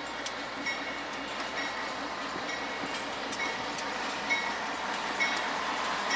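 Norfolk Southern diesel freight train approaching, its locomotives and wheels on the rails growing slowly louder, with scattered sharp clicks and short squeaks.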